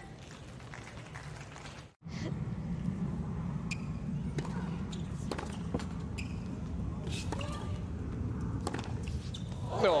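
Tennis rally on a hard court: sharp racket strikes on the ball about a second apart over a low crowd murmur. Near the end the crowd breaks into cheers and applause as the point is won.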